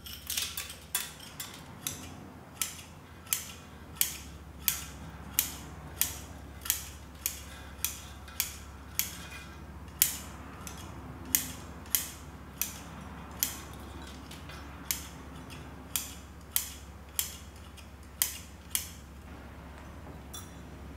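Bonsai scissors snipping through the fine roots of a shinpaku juniper's root ball: a crisp metal snip about every two-thirds of a second, steady and rhythmic. In the first second or so, a metal root pick scratches through the roots.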